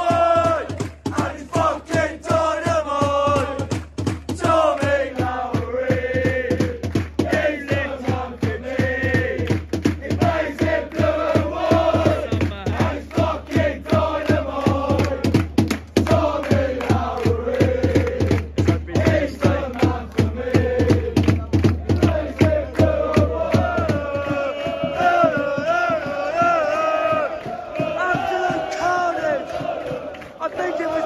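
Football supporters in the stand singing a chant together, with rhythmic clapping along to it.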